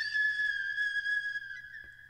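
A single high, held whistle-like tone in a piece of music. It wavers slightly in pitch and fades away near the end.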